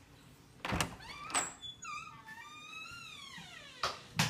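Interior paneled door being opened: a knock from the latch under a second in, then the hinges squeak in a long creak that falls in pitch, with another knock near the end.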